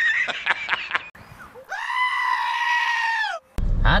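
A meme sound effect of a screaming goat: a string of short sounds in the first second, then one long, high, held bleat of almost two seconds that cuts off abruptly.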